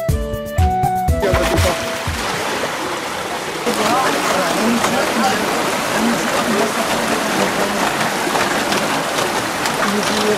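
Water rushing steadily through a wooden sluice gate into a mill race, getting louder about four seconds in. A flute-like music tune fades out in the first second or two.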